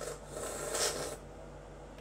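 A short, hissy slurp of milk sucked from the top of an overfilled plastic glue bottle, lasting about a second.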